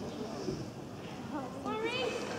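Crowd chatter echoing around an indoor arena, with a short rising high-pitched call near the end.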